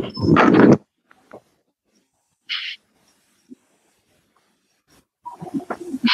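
A short, loud burst of a person's voice that is not words, lasting under a second at the start, then a brief breathy hiss about two and a half seconds in. Between these the sound drops to dead silence, and voice sounds pick up again near the end.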